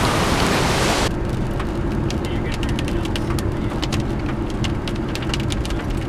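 Loud rushing hiss of wind and rain outdoors, cut off abruptly about a second in. Then comes the steady low road rumble of a car driving, with scattered sharp ticks of raindrops striking the car.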